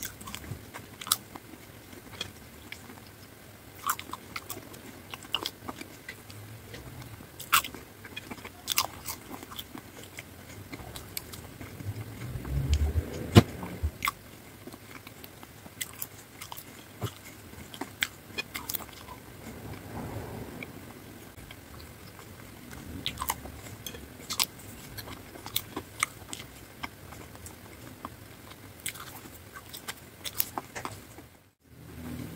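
Close-miked ASMR eating of thick-cut French fries: soft, wet chewing with frequent sharp crunchy clicks and mouth sounds. There is one louder low thump about twelve to thirteen seconds in.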